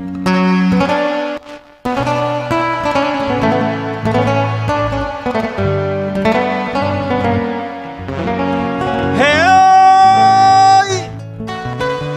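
Live cumbia band music with guitar and bass playing between sung verses. About one and a half seconds in it breaks off briefly, and near the end a long note rises and is held high.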